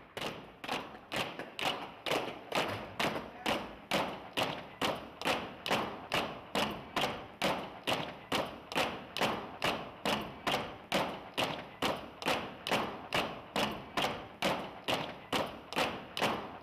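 A steady, even run of percussive thuds, about two and a half a second, each with a short ringing decay.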